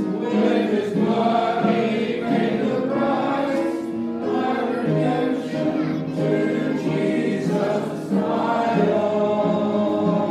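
Church congregation singing a hymn together, in long held notes.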